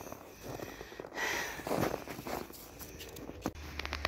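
Footsteps crunching in snow, a couple of soft crunching stretches, followed by a few sharp clicks near the end.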